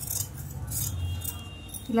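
Large tailor's shears snipping through cotton fabric: a few crisp cuts with the metal blades clicking, over a steady low hum.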